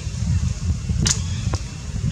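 Wind buffeting the microphone: an uneven low rumble that rises and falls, with two sharp clicks about a second and a second and a half in.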